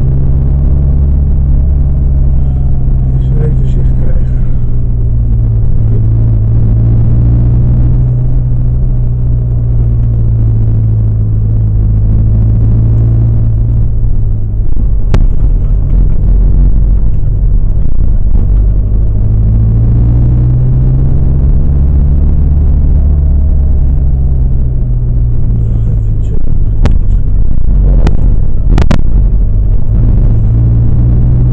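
Car engine and road noise heard from inside the cabin: a low, steady drone whose pitch sinks midway and rises again as the car slows and picks up speed, with a few sharp clicks, mostly near the end.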